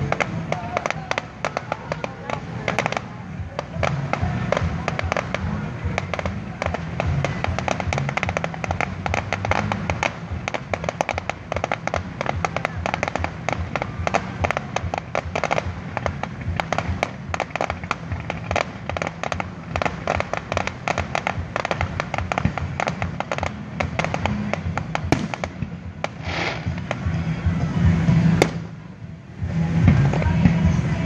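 Fireworks display: a dense, continuous crackle of many rapid small pops from crackling star shells, with deeper bangs underneath. The crackling eases off briefly near the end before louder bursts start again.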